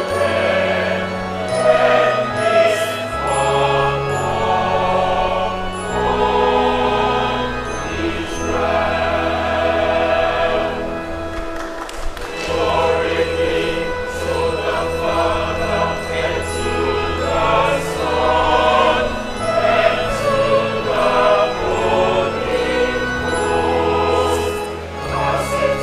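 Large mixed choir of men and women singing a choral piece in parts, over held low accompaniment notes that change every second or two. The sound dips briefly about halfway through.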